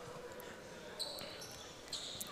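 Faint ambience of a basketball gym: distant voices in a large hall, with one light knock about a second in and faint high tones after it.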